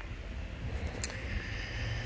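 Handling noise from a phone camera being turned around, with one short click about a second in, over a steady low hum of room noise.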